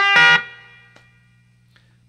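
Electric guitar in open G tuning, played through an amplifier: notes struck right at the start, adding the seventh over the C chord. They are bright for about half a second, then ring out and fade away over the next second. A steady amplifier hum lies underneath.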